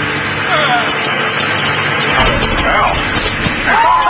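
Giant Van de Graaff generator running with a steady hum while people's voices break in briefly; about halfway through the hum gives way to a low rumble.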